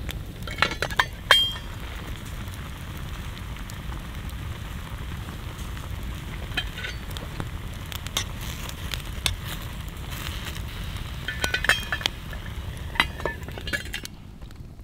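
Wood campfire burning, with a metal camping pot of food sizzling and steaming in the flames. Scattered sharp pops and clicks come from the fire, bunched about a second in and again near the end.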